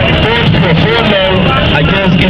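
A voice speaking over loud, steady background noise with a constant low hum.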